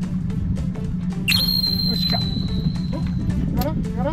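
Background music with a steady beat. A little over a second in, a high whistle-like tone starts sharply and holds for about two seconds.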